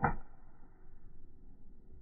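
A golf wedge striking a ball: one crisp strike right at the start, fading within a moment, then only faint outdoor background.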